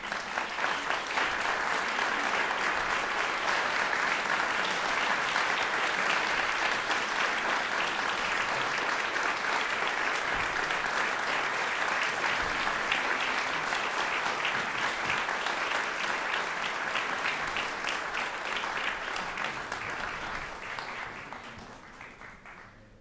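Audience applauding: many hands clapping, starting at once, holding steady, then dying away near the end.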